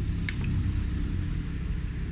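Steady low background rumble, with two faint short clicks about a third and half a second in.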